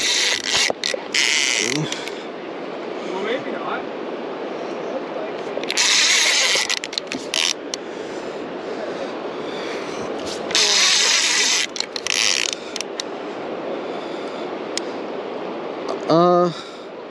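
Large conventional fishing reel under load from a hooked white sturgeon, its mechanism sounding in three loud bursts: one at the start, one about six seconds in and one about ten seconds in.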